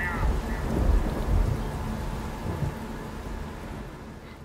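Rain with a low, rolling thunder rumble, fading out steadily.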